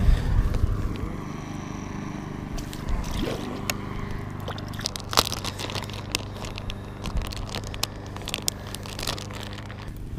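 Clear plastic bag of soft-plastic paddle-tail swimbaits crinkling and crackling in the hands as it is handled, in irregular sharp crackles that come thicker in the second half.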